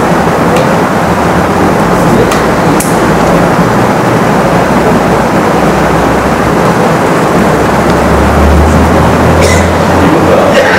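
Steady, loud rushing noise with no speech in it; a low hum swells under it near the end.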